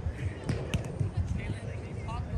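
A hand striking a volleyball on an overhand serve: a sharp slap a little under a second in, over distant voices.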